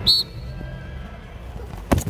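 A referee's whistle gives one short high blast to start a lacrosse faceoff. About two seconds in comes a loud, sharp clack as the two faceoff players' sticks and bodies collide.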